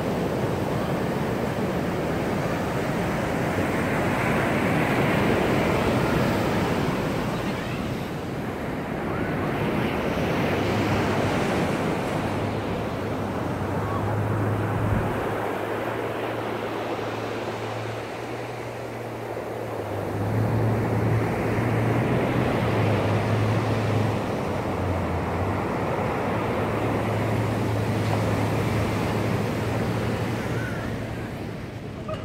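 Surf breaking and washing up a sandy beach, the wash swelling and fading every several seconds, with some wind on the microphone.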